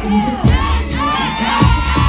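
Crowd of children shouting and cheering with high voices, over dance music with a steady thumping beat.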